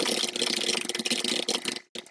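Computer keyboard typing: a fast, unbroken run of keystrokes that stops just before the end, followed by a few single key clicks.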